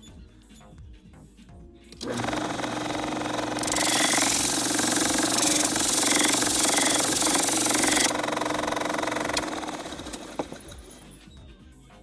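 Drill press starting up about two seconds in and running with a steady hum, spinning a homemade sanding drum of sandpaper wrapped round a dowel. From about three and a half to eight seconds a wooden block's inside curve is pressed against the drum, adding a loud hiss of sanding. The motor then winds down over a few seconds, with background music throughout.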